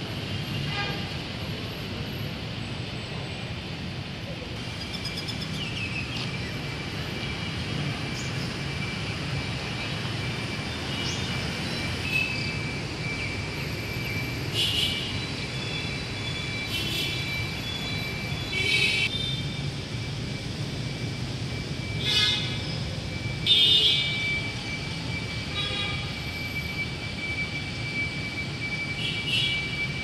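Steady city traffic hum from surrounding streets, with several short vehicle horn toots in the second half.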